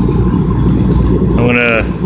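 Remington forced-air salamander heater running with a steady low rumble of fan and burner.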